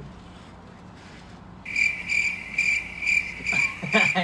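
Cricket chirping, a regular pulsing trill of about three chirps a second that starts abruptly a little over a second and a half in; the stock 'crickets' sound effect for an awkward silence. Laughter comes in near the end.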